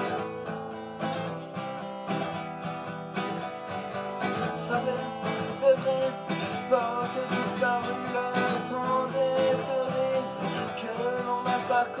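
Acoustic guitar strummed in a steady rhythm of chords, with a man's voice singing along in French.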